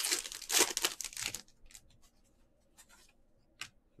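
Foil wrapper of a 2021 Panini Certified football card pack being torn open and crinkled, loudest in the first second and a half, then a few faint rustles and a click as the pack is handled.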